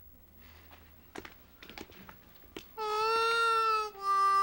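A few faint knocks, then about three seconds in a harmonica starts one long note that bends up slightly and then holds.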